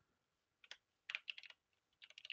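Faint typing on a computer keyboard: a single keystroke a little over half a second in, then a quick run of several keys around a second in.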